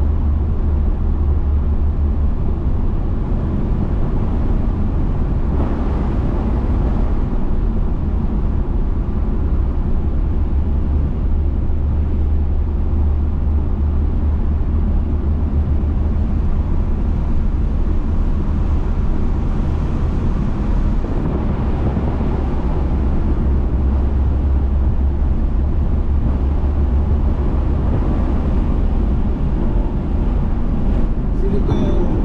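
Audi RS3 cruising steadily, heard from inside the cabin: a low, even rumble of engine and road noise with no marked revs or gear changes.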